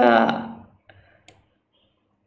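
A man's voice drawing out a syllable and trailing off, followed a moment later by a few faint, quick clicks.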